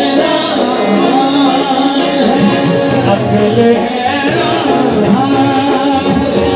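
Qawwali music: a harmonium and tabla accompanying male singing, with the drums fuller from about halfway through.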